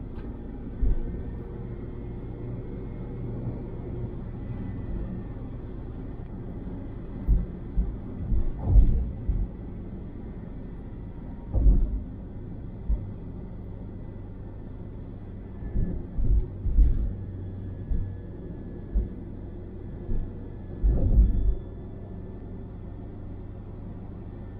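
Steady low road and engine rumble of a car driving at motorway speed, heard from inside the cabin, with a series of brief low thumps from about seven seconds in.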